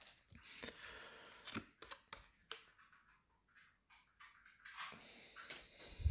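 Freshly pulled Pokémon trading cards handled by hand: a few soft taps and rustles of card stock in the first couple of seconds, a pause with almost nothing, then a soft, high rustle near the end as the stack is handled again.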